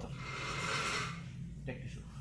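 A single soft breath near the microphone, a hiss that swells and fades over about a second and a half.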